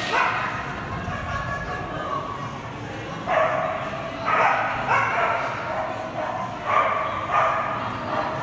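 Dog barking: about five short, sharp barks in the second half, over a murmur of people talking.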